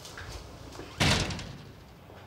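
A glass-panelled wooden office door shut hard about a second in: one sharp bang that dies away over about half a second.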